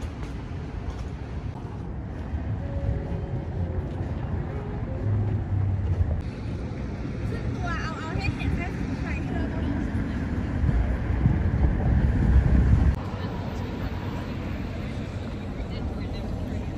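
Outdoor city ambience: a steady low rumble of traffic with wind on the microphone, swelling louder for a couple of seconds late on and then dropping off suddenly, with faint voices in the background.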